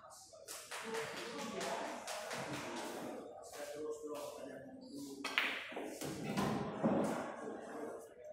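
People talking in a large room, with a sharp click of pool balls striking about five seconds in.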